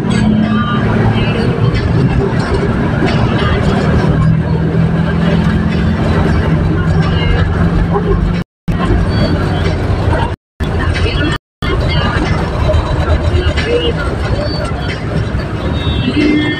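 Jeepney engine running as it drives in traffic, heard from inside the cab: a steady low drone with road noise, its pitch dropping a little about four seconds in. The sound cuts out briefly three times near the middle.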